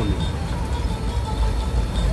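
Car cabin noise while driving slowly on a rough dirt road: a steady low rumble of engine and tyres.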